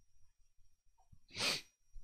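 A man's single short, sharp breath, about a second and a half in.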